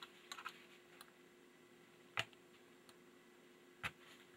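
Quiet, faint clicks of fingers working the plastic trigger guard on a Remington Nylon rifle's stock, with two sharper clicks, one about halfway through and one near the end.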